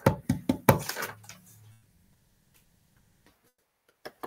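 A quick run of sharp taps or clicks at the desk during the first second or so, then the line falls silent.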